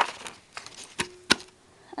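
Handheld craft paper punch pressed down on card: two sharp clicks about a third of a second apart, the second with a brief ring, after some light rustling. The punch does not seem to have cut all the way through the card.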